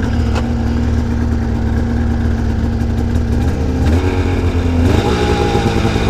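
Polaris RMK 800 snowmobile's two-stroke twin engine idling steadily, its revs stepping up slightly twice in the second half.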